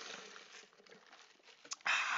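A person sipping Diet Coke, a soft fizzy slurp that fades, then a short breathy exhale near the end.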